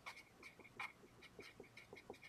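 Faint squeaking and scratching of a felt-tip marker writing on paper, a quick series of short, high squeaks.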